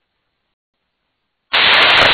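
Dead silence for about a second and a half, then an air traffic control radio channel opens suddenly with a loud static hiss as the next transmission keys in.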